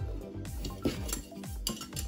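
A few light clicks and clinks as a metal ruler and pencil are handled on a tabletop, over soft background music.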